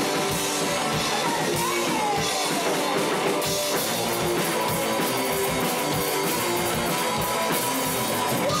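Rock band played live: an electric guitar playing a repeating riff over a drum kit beat.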